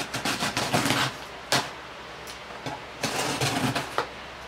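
Scissors cutting through packing tape on a cardboard shipping box: two stretches of rapid rasping as the blade rips along the tape, with a single sharp snap about a second and a half in.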